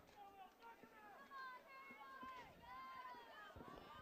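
Faint stadium field sound: distant voices of crowd and players calling out, with a couple of soft knocks near the end.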